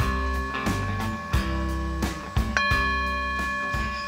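Background music with a steady beat, over which a singing bowl rings: struck just before the start and again about two and a half seconds in, each strike ringing on with a few clear, steady tones.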